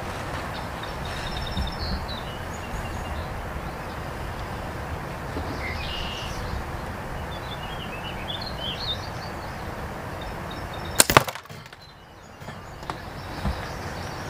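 A slingshot shot at a hanging plastic lighter: one sharp double crack about eleven seconds in, the bands letting go and the ball smashing the lighter. Before it there is a steady wash of wind noise with a few faint bird chirps.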